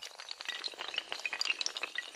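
Sound effect of a long chain of dominoes toppling: a dense, rapid clatter of small, hard clicks and chinks.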